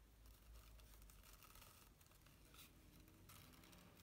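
Near silence, with faint, scattered rustles of ribbon being handled and pulled tight around a paper box.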